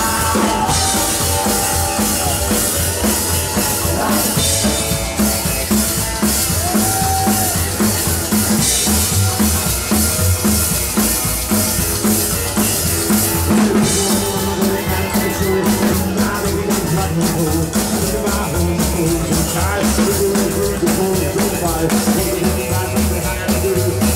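A live rock and roll band playing, with a driving drum kit beat (snare and bass drum) under guitars and double bass.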